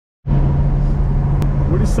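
Inside a moving car with no windows: a steady engine drone with road and wind rumble, starting abruptly about a quarter second in, with a single click about a second later.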